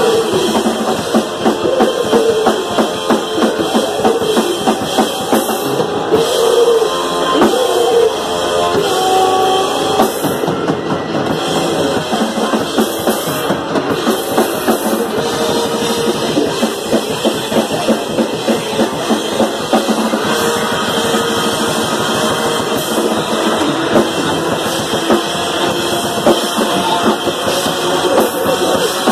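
Grindcore band playing live: a fast, loud drum kit with distorted electric guitar and bass, running without a break.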